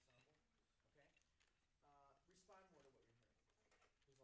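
Near silence with faint, distant talking in a small room.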